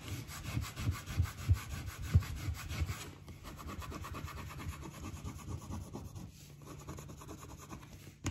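Plastic scraper rubbed rapidly back and forth over the back of a sheet of paper laid on an inked plate, burnishing the paper to transfer the ink for a monoprint. A dense scraping rub, louder for the first three seconds and softer after.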